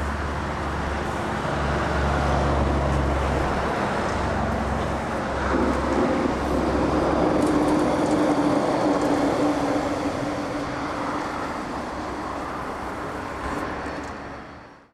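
Road traffic noise: a continuous low rumble of passing vehicles that swells in the middle with a steady droning tone, then eases off near the end.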